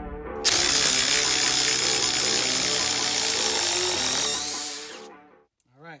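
Cordless Ryobi 18V ONE+ HP impact driver hammering in reverse to back an 8-inch lag bolt out of wood. It starts suddenly about half a second in, runs loud and steady with a high whine for about four seconds, then winds down as the bolt comes free. Background music plays throughout.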